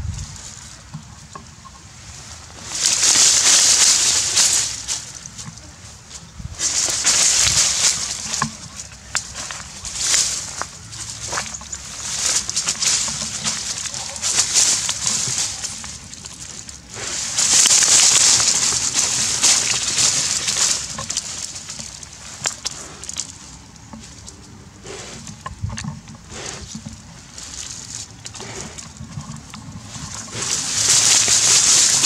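A dog digging at a hole in grassy ground, its paws scraping soil and dry grass in repeated bursts of scratching and rustling, each a second or two long, with short pauses between.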